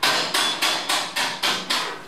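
Hammer blows struck in quick, even succession, about seven strikes in two seconds, starting abruptly.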